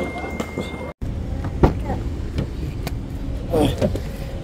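Low steady rumble of a car heard from inside its cabin, with a few light clicks and a short burst of voice near the end. The first second is room noise with a faint steady high tone, which cuts off abruptly.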